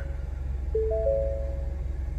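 Ford F-150 dashboard chime: three bell-like tones starting one after another about a second in and ringing on together for about a second, over a steady low hum.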